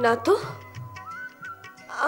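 Background score of a TV drama: a held, gliding melody line that steps up in pitch about a second in, over soft regular ticks, with a woman's brief spoken words at the very start.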